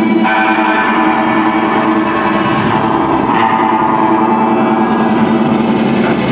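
Live electric guitar played through effects pedals: a loud, dense drone of many ringing tones held without a break.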